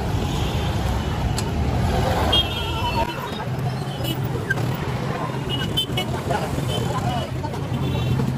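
Busy street traffic: scooters and auto-rickshaws running close by under a crowd's chatter, with several short high horn beeps.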